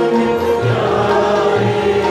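Sikh devotional kirtan: several men singing together in long held phrases over bowed string instruments, with low tabla strokes underneath.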